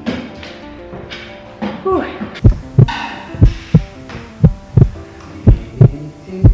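A heartbeat sound effect, added in editing for suspense, begins about two and a half seconds in: loud low thumps in loose pairs, two to three a second, over a steady hum. Before it there is a soft music bed with a brief voice.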